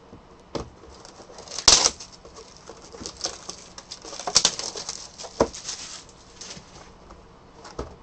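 Cardboard trading-card hobby box and cards being handled on a table: a few sharp taps and knocks, the loudest about two seconds in, with light rustling and scraping of cardboard between them.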